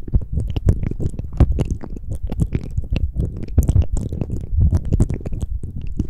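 Close-miked mouth sounds: a dense run of small wet lip and mouth clicks and smacks, made with the lips pressed against a pair of pencil condenser microphones. Heavy muffled low thumps come from the mics pressing and rubbing on the lips.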